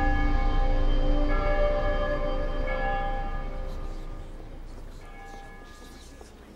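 Deep ringing bell tones over a low rumble. Fresh strikes come about a second and a half apart, each ringing on, and the sound slowly fades away.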